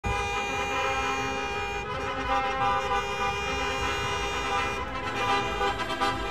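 Car horns sounding long and steady over the rumble of street traffic.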